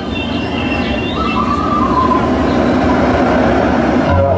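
Concert crowd cheering and screaming in a steady roar that grows a little louder, with a few high screams standing out.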